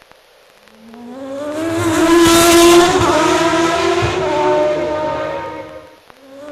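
An engine-like hum with a rushing whoosh: it rises in pitch as it swells over about two seconds, holds its loudest for a moment, then slowly fades out.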